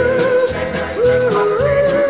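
Doo-wop oldies record: voices holding long harmony notes that slide from one pitch to the next, over a steady beat with ticking cymbals.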